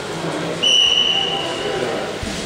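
A referee's whistle: one steady high blast of about a second, starting about half a second in, over background voices in the hall.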